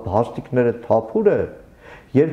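A man speaking in Armenian; his voice drops in pitch at the end of a phrase, and a short pause follows near the end.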